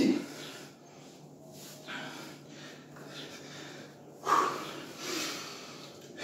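A man breathing hard after a strenuous bodyweight exercise. Loud, noisy exhales come about four and five seconds in.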